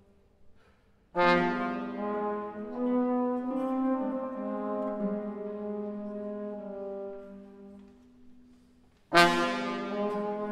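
Contemporary chamber music for baroque alto trombone (sackbut), alto flute and classical guitar. After about a second of near silence, a sudden loud entry of several held, brass-like notes slowly fades away, and a second sudden loud chord enters near the end.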